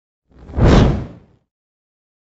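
A single whoosh transition effect for a news logo animating in, swelling and fading within about a second, with a deep rumble beneath it.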